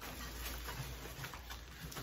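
Faint handling noise: light rustles and small knocks as the boxed parts of a metal rolling garment rack are moved about.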